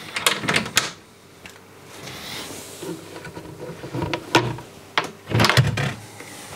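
Aquarium cabinet door being unclipped from its quick-release fittings and lifted off: a cluster of clicks and knocks in the first second, another knock at about four seconds, and a run of clunks near the end.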